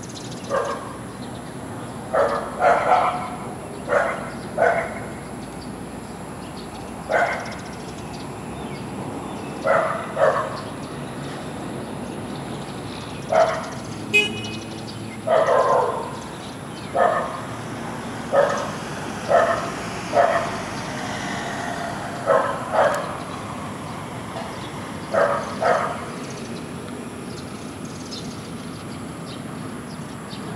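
A dog barking repeatedly at irregular intervals, in single barks and quick pairs, over a steady background hum.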